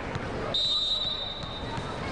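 Referee's whistle blowing one long, steady, high note, starting about half a second in and held for about a second and a half: the signal that authorises the serve. Under it, a volleyball bounces on the court floor as the server readies.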